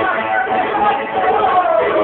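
Man singing a jota verse in an ornamented voice over plucked-string accompaniment, his line gliding downward about one and a half seconds in.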